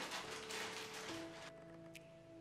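Background music with long held notes over the crackly rustle of a plastic zip bag and celery leaves being handled. The rustling stops about three-quarters of the way through, leaving the music.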